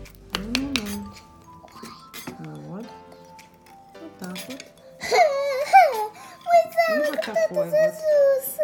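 A small child's voice over background music with steady held notes. The child's voice grows loud and high from about five seconds in.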